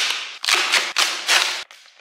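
Cardboard packaging being wrenched and torn open by hand in several short, sudden rips.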